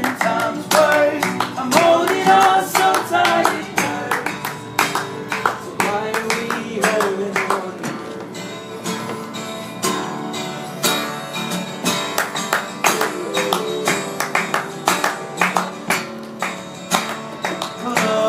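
Acoustic guitar strummed with a man singing a song live, with hand claps keeping a steady beat.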